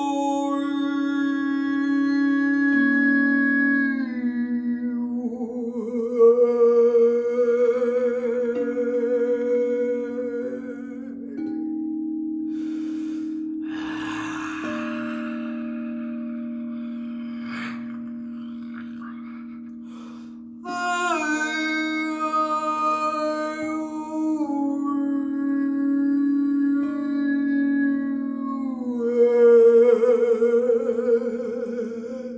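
A woman's voice improvising in long wavering sung tones and raw primal vocal sounds over a steady sustained drone that shifts pitch in steps. Near the middle the singing breaks into a rough, noisy outcry while the drone slowly fades, and the singing returns strongly in the last third.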